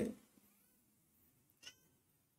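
The tail of a man's word, then quiet room tone broken by one brief, faint, high-pitched squeak near the end.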